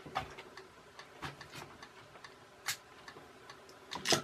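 A few sharp, irregularly spaced clicks and light knocks, with a louder click at the very end, as a room light is switched off and things are handled on a workbench; a faint steady hum runs underneath.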